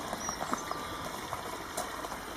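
Quiet outdoor background with a few faint crunches of slow footsteps on gravel.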